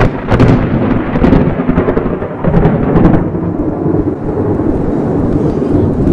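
Thunder from a close lightning strike: a loud rolling rumble with sharp cracks in the first second or so, easing to a lower, duller rumble after about three seconds.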